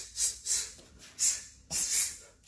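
Short, sharp hissing breaths forced out with each strike of a punching and kicking combination. Three come quickly, about a quarter second apart, then two more follow, spaced further apart.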